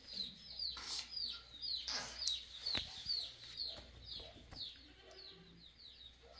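A bird chirping over and over: short, high chirps that fall in pitch, about two a second, with a few faint knocks in between.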